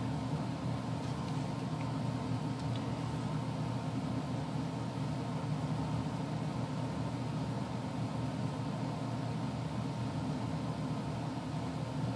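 Steady low background hum with no distinct sounds in it.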